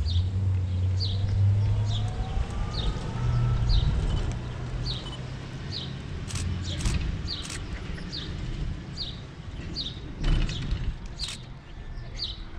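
Low engine rumble of road traffic, loudest in the first two seconds and with a faint rising tone as a vehicle pulls away. A small bird chirps a short high note roughly once a second, and a few sharp knocks come near the middle and end.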